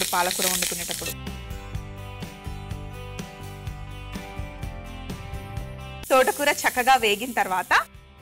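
Amaranth leaves sizzling in hot oil in a steel pan as a spatula stirs them, over background music. For several seconds in the middle the sizzle drops out and only steady instrumental music is heard.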